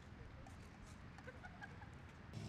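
Faint birds chirping in short scattered calls over a low steady outdoor rumble, near silence overall.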